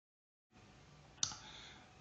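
Dead silence for the first half second, then faint room hiss with a single sharp click a little over a second in, fading quickly.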